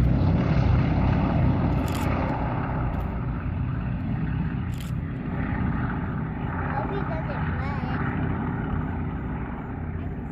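Four-engine WWII bomber's radial piston engines droning as it passes low with its gear down and climbs away, the rumble slowly fading.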